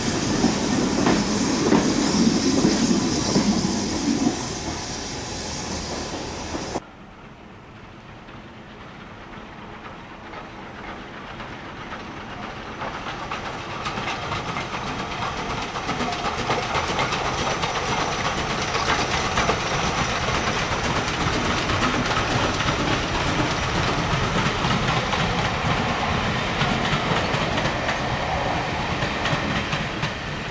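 A train passes close by with its wheels clattering over the rails, then cuts off abruptly about seven seconds in. Then a Robert Stephenson & Hawthorn 0-6-0ST saddle-tank steam locomotive runs past hauling green coaches. Its running sound swells over the next several seconds and then holds steady.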